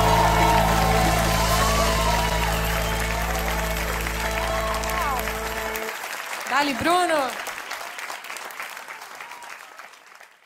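A live acoustic band holds the final chord of a song, which stops abruptly about six seconds in. Audience applause and a shouted cheer follow, then die away.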